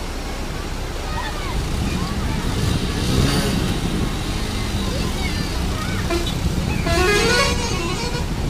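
Swollen floodwater rushing steadily, with people's voices calling out over it, loudest about three seconds in and again near the end.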